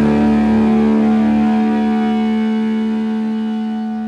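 Electric guitar's last chord ringing out and slowly fading as the song ends.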